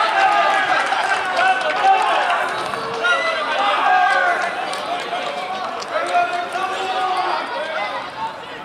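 Several men's voices shouting and calling out over one another on an open football pitch, the sound of players and bench celebrating a goal.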